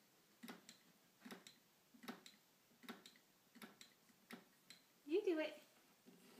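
A steady run of soft electronic ticks, about two a second, from the LightAide LED board as its columns of lights fill one after another. About five seconds in comes a short voice sound.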